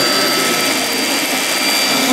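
Rowenta Air Force Extreme cordless stick vacuum running steadily: a high, even motor whine over the rush of suction air.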